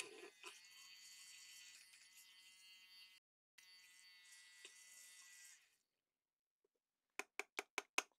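Battery-powered Badger paint stirrer running with a thin, high, steady buzz as it spins in a pot of isopropyl alcohol to clean its shaft. It cuts out for a moment about three seconds in, runs again and stops before six seconds. Near the end come about six quick, light clicks.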